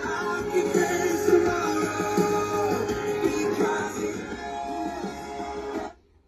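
Music with singing from an FM radio broadcast, played through a car radio head unit under test; it cuts off suddenly near the end.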